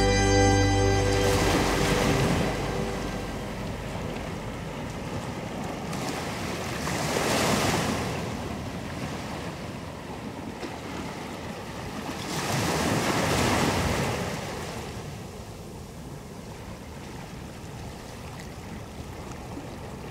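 Ocean waves washing onto a shore, swelling and falling back three times about five to six seconds apart, as the song's final notes fade out in the first second or two.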